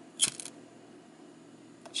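Vintage IM Corona Pipe Magie pipe lighter flicked open with one finger: a sharp metallic click with a short rattle of the lid and mechanism about a quarter second in, then a faint click near the end.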